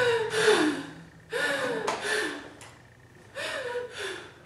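A woman gasping heavily, three breaths each with a downward-sliding vocal sound.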